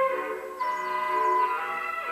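Orchestral film-score music: a melody of held notes over sustained accompaniment.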